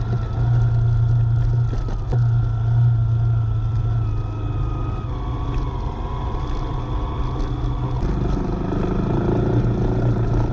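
Vehicle engine running steadily at low road speed, with a thin steady whine over it that drops a little in pitch about halfway through. There is a single knock about two seconds in.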